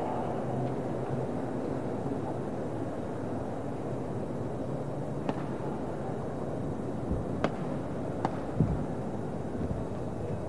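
Badminton racket strikes on a shuttlecock during a rally: three sharp cracks in the second half, over the steady murmur of a crowd in the hall.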